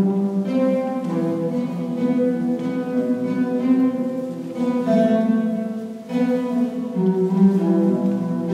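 Solo oud playing a slow melody, with a brief dip about six seconds in.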